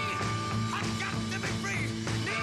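A rock band playing live over a steady beat, with a held note and several high notes sliding up and down in pitch.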